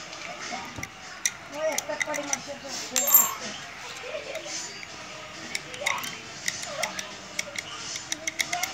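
Sharp metallic clicks and clinks from a brass padlock and its small brass key being handled, with the key set down on a concrete floor. The loudest is a ringing clink about three seconds in, and a quick run of clicks comes near the end.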